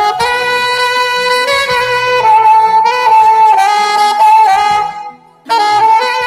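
Saxophone playing a slow melody in long held notes, breaking off about five seconds in for a short pause before the next phrase starts.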